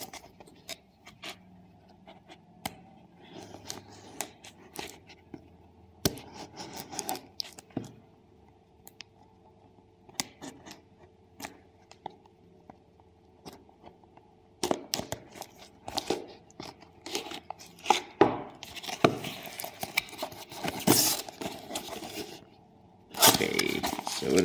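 A pocket-knife blade slitting the clear plastic wrap on a cardboard parcel, then the wrap being torn and the box opened: scattered scrapes, clicks and crinkling rustles. The sounds are sparse at first, grow denser and louder in the second half, and end in a loud burst of rustling.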